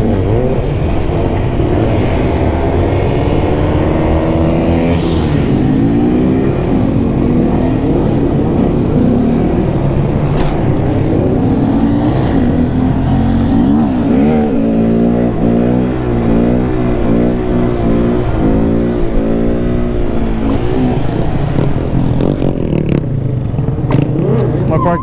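2017 Honda Grom's small single-cylinder engine with stock exhaust, ridden around in circles, revving up and down over and over as the throttle is worked. The pitch rises and falls in quick repeated swings, most busily in the second half.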